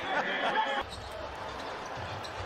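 A TV basketball commentator laughing over game sound from the arena. Less than a second in, an edit cuts to quieter, steady court noise from a game in progress.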